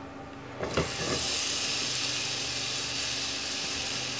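Chopped onion dropped into hot oil in a stainless steel frying pan: a few soft knocks about three-quarters of a second in, then a steady sizzle as the onion starts to fry.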